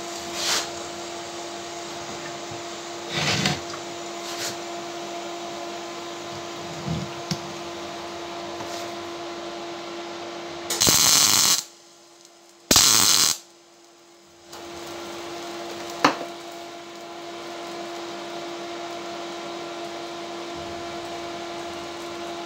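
Welding machine humming steadily. A little past halfway come two short bursts of MIG welding arc crackle, each under a second, as the cracked steel fuel tank is tack-welded; the hum cuts out between them.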